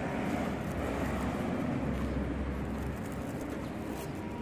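Pigeons cooing over a steady low outdoor rumble.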